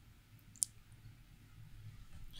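Near silence with a single short, sharp click a little over half a second in.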